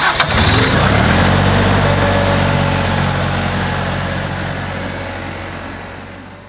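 Branson 3520H compact tractor's diesel engine starting: a click, a short rise in pitch as it catches in the first second, then a steady idle that gradually fades away.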